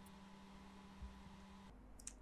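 Near silence: room tone with a faint steady hum that cuts off shortly before the end.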